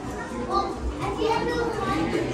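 Overlapping chatter of people waiting in a queue, with high-pitched children's voices among them.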